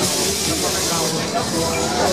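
Funfair din: loud ride music mixed with people's voices. A burst of hissing runs through about the first second.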